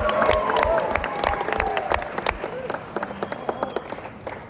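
Concert audience applauding and cheering, with voices shouting among the clapping; the clapping thins out and fades toward the end.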